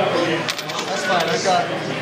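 Several people talking over one another in a bar, with a few quick sharp clicks about half a second in.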